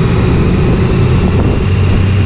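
2020 Honda Gold Wing's flat-six engine running steadily as the motorcycle rides along at low speed, with a steady low hum and some wind and road noise on the bike-mounted microphone.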